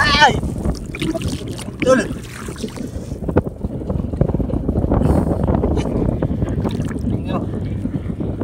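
Hand splashing and sloshing in shallow seawater, with steady wind rumbling on the microphone.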